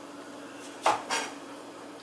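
Chef's knife chopping cooked green beans on a wooden cutting board: two quick strokes a little under a second in, the first the louder.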